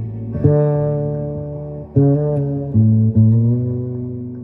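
F Bass AC6 fretless six-string electric bass playing a slow melody. Notes are plucked about half a second in, at about two seconds, and twice more just before three seconds in. Each note rings on and slowly fades, and the last one slides slightly upward in pitch, as a fretless can.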